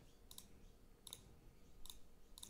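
Near silence, with a few faint computer mouse clicks spaced under a second apart.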